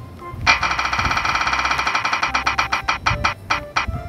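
Spinning prize-wheel sound effect: a rapid run of pitched ticks starts about half a second in and gradually slows to about two ticks a second as the wheel winds down, over light background music.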